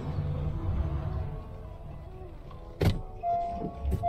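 Background music over a car's low running rumble while it is being parked, the rumble fading after about a second and a half. Two sharp knocks come near the end, the first the louder.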